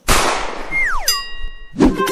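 Cartoon-style comic sound effect: a sudden crash-like hit with a falling swoosh and a descending whistle glide that ends in a ringing ding, then a short low thump near the end.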